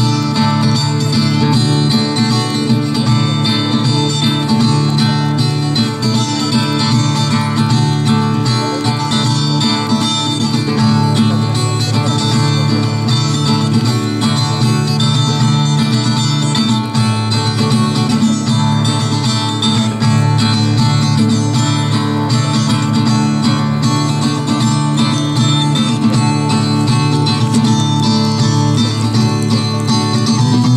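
Solo acoustic guitar playing an instrumental ballad passage, steady and unbroken, with no singing.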